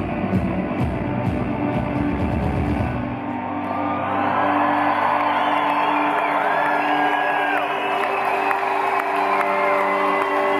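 Live rock band playing the last bars of a song. The drums and bass stop about three seconds in, leaving a held instrument tone ringing on while the crowd cheers and whoops.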